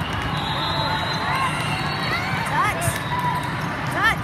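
Volleyball gym sounds: sneakers squeaking on the sport-court floor, balls being struck and bouncing, and players' voices. A single sharp ball impact stands out at the very end.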